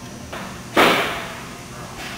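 The dispense gun's material valve handle being shut off, with a faint start and then a single sudden burst of hissing noise just under a second in that fades over about half a second.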